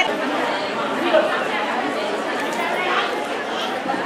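A crowd of people talking at once, a steady murmur of overlapping voices with no one voice standing out.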